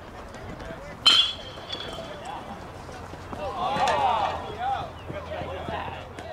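Metal baseball bat hitting a pitched ball about a second in: one sharp ping with a ringing tone. A couple of seconds later come voices shouting.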